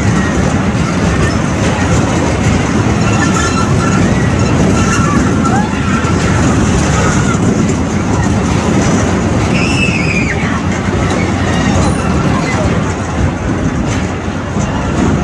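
Spinning carnival ride running: a loud, steady mechanical rumble with crowd voices blended in, and a brief high cry about ten seconds in.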